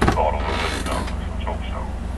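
A steady low hum, with faint creaking sounds over it.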